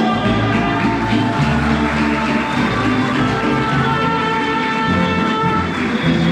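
Mariachi band playing, a trumpet carrying the melody over strummed guitars.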